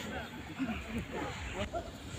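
Indistinct voices of people talking and calling out across an open field, with a steady low rumble underneath.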